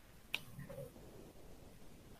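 A single short, sharp click about a third of a second in, against a quiet room, followed by a faint brief murmur.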